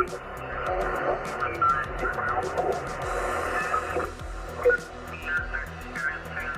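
Received 40-metre lower-sideband audio from a Yaesu FT-710 HF transceiver's speaker as the radio is tuned across the band: narrow-band noise with garbled voices and tones shifting past.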